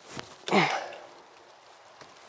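A person's short breathy sigh about half a second in, trailing off into faint outdoor background.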